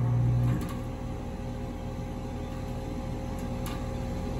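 Steady low hum of running pool equipment, with a few faint steady tones in it. A deeper hum drops away about half a second in.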